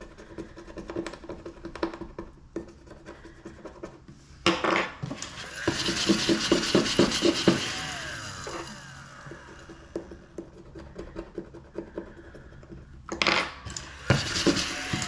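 Faint scratching of a scratch-off card being rubbed with a metal stylus. About a third of the way in there is a sudden clatter, then a few seconds of louder rubbing and rattling as a plastic tub is picked up and handled. Quieter scraping follows, with another short handling noise near the end.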